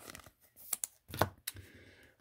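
Glossy trading cards being handled: a few short, light clicks and slides as one card is moved aside and the next ones picked up.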